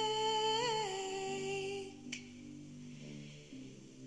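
Song with a singer holding one long hummed note that dips slightly and fades out about two seconds in. Soft sustained accompaniment chords carry on underneath, with a faint click just after the note ends.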